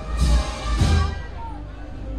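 Wind band (banda de música) playing a processional march, with two loud beats about half a second apart, over the chatter of a large crowd.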